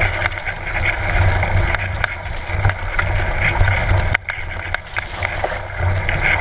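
Mountain bike rolling fast over a leaf-covered dirt trail: steady rolling and rattling noise with scattered clicks, under a low rumble of wind buffeting the microphone, easing briefly about four seconds in.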